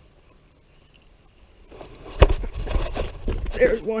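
Quiet at first, then a sharp knock about two seconds in, followed by a burst of rough jostling noise on a head-mounted action camera as the angler turns sharply, ending in a short exclamation.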